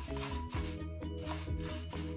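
Wooden spatula scraping through split moong dal as it dry-roasts in a nonstick pan, several stirring strokes, over steady background music.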